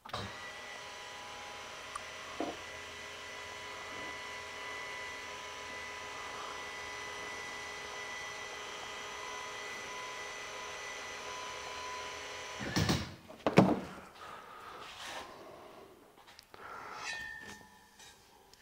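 The electric linear actuator of a Black Boar ATV implement lift runs with a steady whine for about twelve seconds as it raises the toolbar, then stops. A few clunks follow shortly after.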